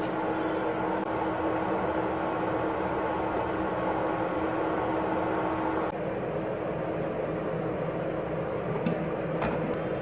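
Steady hum of a kitchen appliance fan, with one constant tone over a rushing noise, while pasta cooks on an induction cooktop. A couple of light clicks come near the end.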